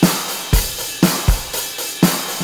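Three software drum instruments, Logic Pro X Drummer, Superior Drummer and Addictive Drums, playing the same beat layered together. Kick and snare hits land roughly every half second under a steady wash of cymbals and hi-hat.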